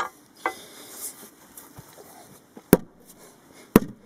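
Two hard hammer blows on a wooden fence stay, about a second apart near the end, driving the stay down against its post; a lighter knock comes at the very start.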